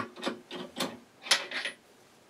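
A few short scrapes and rubs of small metal lathe accessories being handled, with one sharp metallic click about two-thirds of the way through.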